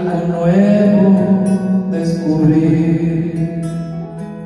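A man singing a drawn-out, wavering note without clear words over backing music played through a small loudspeaker.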